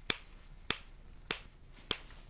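Metronome clicking a steady beat, four sharp ticks about 0.6 s apart (roughly 100 per minute). It is the beat the walker's head turns are timed to.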